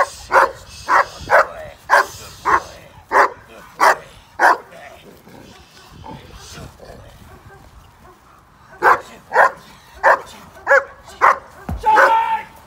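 A black German Shepherd barking hard on its lead at a man playing a trespasser: the dog is being 'switched on' to guard and threaten in a security-dog drill. It gives about two barks a second for four or five seconds, pauses for about four seconds, then barks about five more times.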